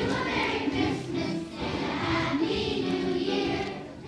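A children's choir singing, holding notes in phrases with short breaks between them.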